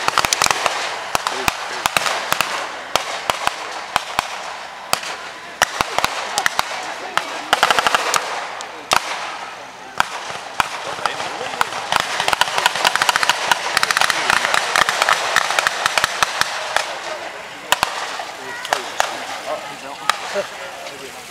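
Blank gunfire from a battle reenactment: scattered single shots, with denser runs of rapid machine-gun fire about a third of the way in and again past the middle, over a continuous background hiss.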